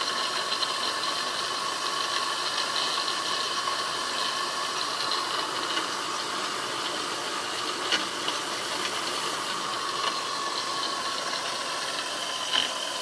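Small 1930s model steam turbine running steadily under steam pressure: an even hiss of steam with a thin, steady high whine. There is a single small tick about eight seconds in.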